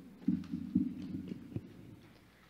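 A handful of low, muffled thuds of handling noise over the sound system as an electric bass is taken off and a microphone is handled after the song.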